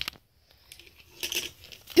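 A few light clicks and rustles of small objects handled on a tabletop, the loudest cluster a little past the middle, as a plush toy and folded paper money are moved about.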